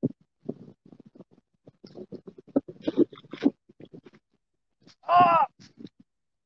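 Scattered irregular crackling and clicking. About five seconds in, a man gives one loud, short strained grunt as he fights a heavy carp on a bent rod.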